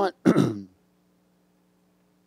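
A man clearing his throat once, short and rough, falling in pitch, followed by a faint steady hum.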